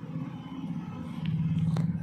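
A steady low machine hum that grows louder about halfway through, with a few faint ticks.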